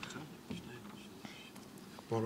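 Soft whispering and low murmuring close to the microphone, with a faint knock about half a second in.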